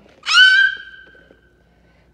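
A single high-pitched squeal that slides down a little in pitch, then holds and fades out over about a second.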